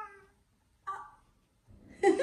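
Brief high-pitched vocal sounds from a small child: a short rising squeal at the start and another short cry about a second in.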